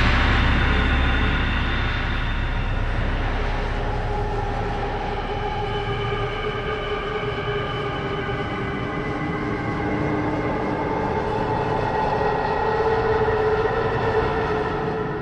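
Horror film score music: a sustained drone chord of long held tones over a low rumble that dies away over the first several seconds, the chord swelling a little near the end.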